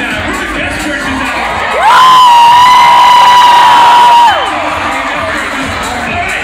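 Crowd cheering and yelling. About two seconds in, one voice lets out a loud, held high yell for about two and a half seconds, swooping up at the start and dropping off at the end.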